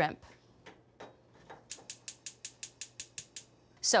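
Gas stove burner's spark igniter clicking rapidly, about eight clicks a second, starting about a second and a half in and stopping after under two seconds.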